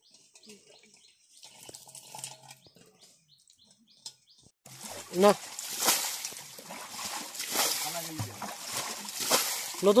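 Faint at first; from about halfway, muddy water sloshing and splashing as a metal basin is scooped through a shallow hand-dug water hole, with voices over it.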